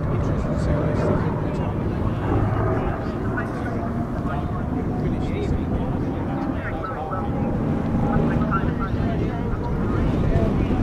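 The P-51D Mustang's Packard Merlin V-12 engine droning steadily overhead as the aircraft flies its display. Voices of people nearby are mixed in.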